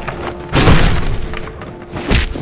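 Background film music with steady held notes, and a heavy booming impact hit about half a second in that fades over about a second.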